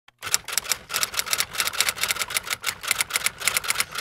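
Rapid typing on a keyboard: a fast, uneven run of key clicks, many a second.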